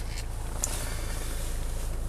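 Hyundai Santa Fe's engine idling, a steady low hum heard from inside the cabin, with a faint click a little over half a second in.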